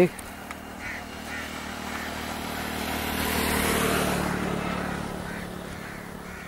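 A motor vehicle passing by, its engine and road noise swelling to a peak about four seconds in and then fading, over a steady low hum.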